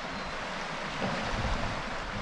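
Steady wash of sea surf in a rocky cliff inlet, mixed with wind rumbling on the microphone.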